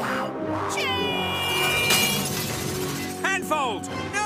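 Cartoon soundtrack: music under a character's long, drawn-out yell, then quick falling pitch glides of a cartoon sound effect near the end.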